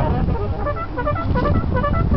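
Saxophone and brass horns of a small walking street band playing short, clipped notes, over a low rumble on the microphone.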